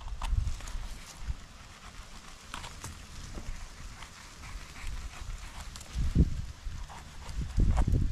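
A small knife scraping and tapping soil off a porcini mushroom's stem, with a low wind rumble on the microphone and a louder low thump about six seconds in.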